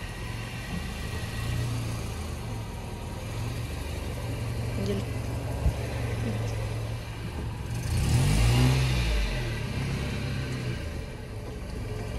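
Honda City sedan's engine running at low speed as the car creeps past close by, with a rise in revs about eight seconds in. A single sharp click about halfway through.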